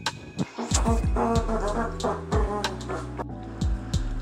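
Background music with a deep bass line and a steady beat of low drum hits.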